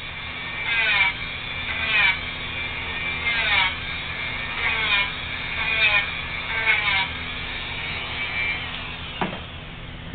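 Multi-speed Dremel rotary tool with a Peticure nail-grinding head running while it grinds a dog's toenails. Its pitch repeatedly falls in short whines, about once a second, as it is pressed to the nail. The tool stops near the end with a single click.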